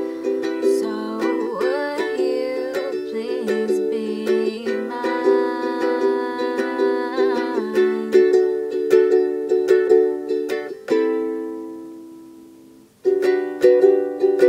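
Acoustic ukulele strumming chords in a steady rhythm. About eleven seconds in, one chord is left ringing and fades away for about two seconds before the strumming starts again.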